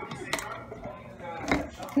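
Two sharp clicks, a little over a second apart, from the plastic bowl and handle of a food processor being handled while its motor is stopped.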